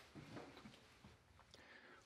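Near silence, with a few faint light scratches and taps in the first second: a mouse's feet scrabbling on a 3D-printed plastic funnel trap as it squeezes inside.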